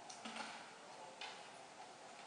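A few faint, short ticks and scuffs over quiet room tone: a small cluster in the first half second and a single one just past a second in.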